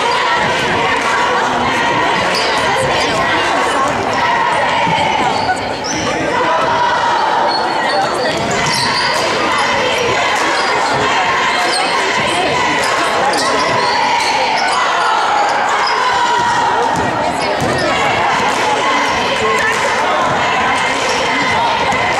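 Basketball bouncing on a hardwood gym floor during play, with many short knocks and the steady chatter of spectators, echoing in a large gym.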